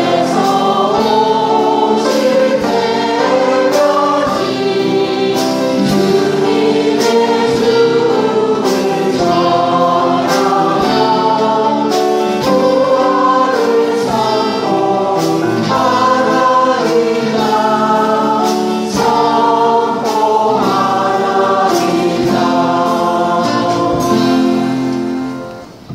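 Choir singing a Mass chant, accompanied by a strummed acoustic guitar. It comes right after the consecration, in the place of the sung memorial acclamation.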